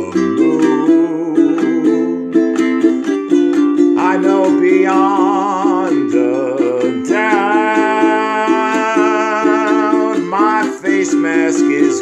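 Ukulele strummed in a steady rhythm, with a man singing long held notes with vibrato over it, one about four seconds in and a longer one from about seven to ten seconds.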